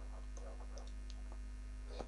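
Low, steady electrical mains hum with a few faint ticks.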